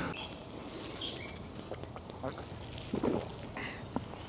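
Quiet outdoor background with a few faint, short bird chirps.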